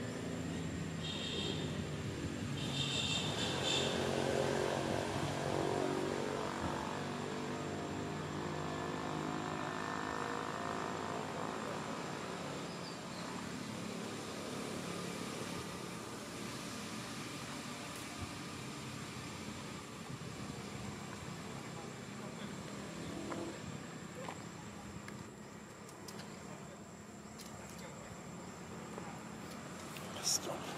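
A motor vehicle's engine running and passing, loudest about four to six seconds in and then slowly fading. Short high chirps sound twice near the start.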